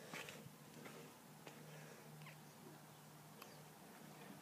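Near silence, with a few faint soft rustles and a faint steady low hum.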